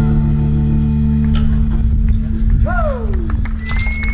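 Live electric band's final chord ringing out: a held low bass note sustains under fading guitar tones. A single falling glide comes about two-thirds of the way through, and a high steady tone near the end, over a few scattered sharp clicks.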